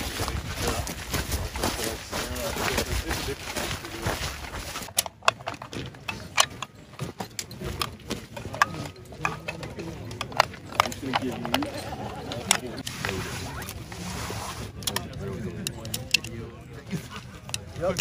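Wind on the microphone for the first few seconds. Then comes a long run of sharp, irregular clicks as rifle cartridges are pushed one by one into a box magazine.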